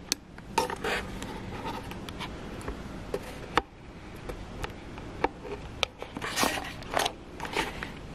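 Handling noise from a Canon EOS M50 mirrorless camera: scattered sharp clicks and short scrapes as its flip-out screen is swung round and the body is turned in the hands.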